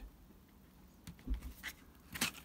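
Craft knife blade cutting into the edge of a plastic cobblestone sheet: a few faint scratchy clicks, mostly in the second half.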